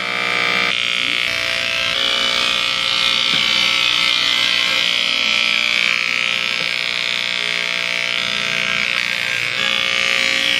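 Corded electric hair clippers running with a steady, loud buzz while shaving hair off a head.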